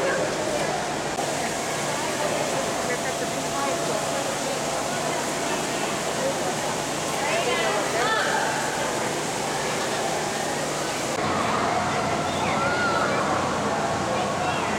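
Steady rushing background noise with indistinct voices of people nearby, with no clear words. The background changes slightly twice where the clips are cut.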